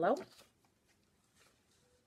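A woman says the word "yellow", then quiet room tone with a faint, brief rustle of paper about one and a half seconds in as a cut-out paper circle is pressed onto a sheet on the wall.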